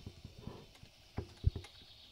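A black plastic bucket being fitted into the wooden frame of a donkey's pack saddle, knocking and bumping against it in a run of irregular knocks, the loudest about one and a half seconds in.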